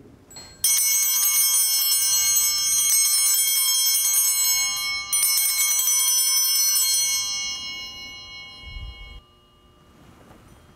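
Altar bells rung at the elevation of the consecrated host. A sustained peal of small bells runs about four seconds, then breaks briefly. A second peal follows, fades, and stops abruptly near the end.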